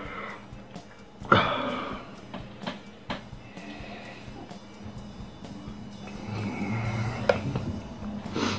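A man's strained, laboured breathing from the burn of a raw habanero pepper, with a sharp gasp or exhale about a second in. A few light clicks follow as he drinks from a cup.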